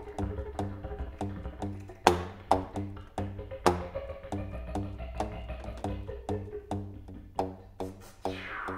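Didgeridoo and contrabass flute improvising together: a steady low didgeridoo drone with pitched overtones above it, cut by sharp percussive clicks about three a second. Two of the clicks are stronger accents, about two seconds in and again near four seconds in.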